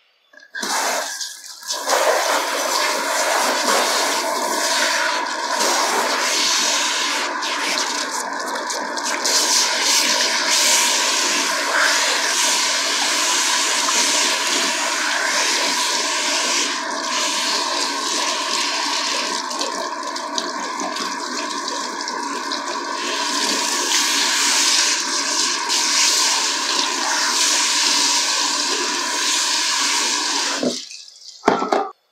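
Handheld salon shower head spraying water onto hair and scalp at a shampoo basin, with the water splashing and running into the sink; a steady rush that starts about half a second in.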